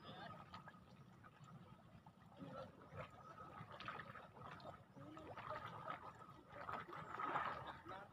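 Faint, indistinct voices over a low, steady background noise.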